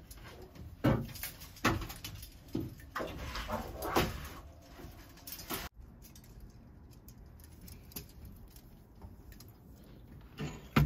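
Plastic clothespin hanger clicking and rattling as laundry is handled, with several sharp clacks and rustles in the first half. A little before six seconds it stops abruptly, leaving faint room sound with an occasional light tick.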